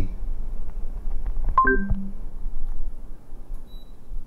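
Google Assistant's short electronic chime, a few notes sounding together for about a third of a second, a second and a half in, marking that the spoken command to turn off the room AC has been taken. A steady low hum runs underneath, and a few faint clicks come just before the chime.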